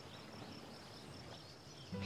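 Faint outdoor garden ambience: a soft hiss with distant birds chirping and a thin, steady high chirr.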